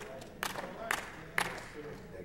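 Four sharp claps about half a second apart, over a low murmur of voices.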